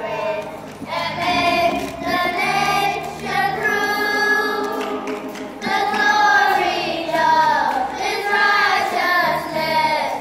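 Children's choir singing a song together, with several long held notes.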